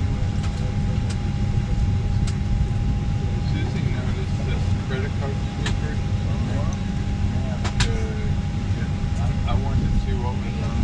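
Airliner cabin noise: a steady, even low drone from the aircraft, with a thin steady tone above it. Passengers talk faintly in the background, and there are a few sharp clicks.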